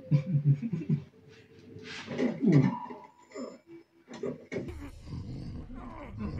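Wordless vocal sounds from a man's voice in short broken pulses, then another drawn-out sound a couple of seconds in. A low rumble with fuller soundtrack sound comes in after about four and a half seconds.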